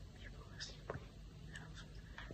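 A woman whispering softly.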